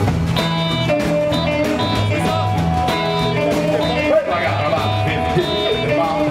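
Rock and roll band playing live: strummed acoustic guitar, electric guitar and upright bass over a steady beat.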